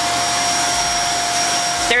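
Kenmore DU2001 bagless upright vacuum running steadily on suction alone through its unpowered upholstery tool: a rush of air with a steady whine over it.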